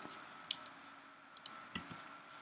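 A few faint, scattered clicks of computer keys and a mouse or trackpad button, spaced irregularly, over a faint steady high tone.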